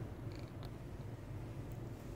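Two pet parrots, a monk parakeet and a small macaw, preening on a perch: a couple of faint short chirps early on over a steady low pulsing hum.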